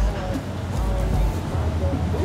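Nissan GT-R's D2 Racing air-cup front suspension lift filling with air to raise the nose for more ground clearance: a steady hiss over a low rumble.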